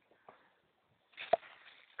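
Near silence, broken by one short, sharp click about a second and a third in.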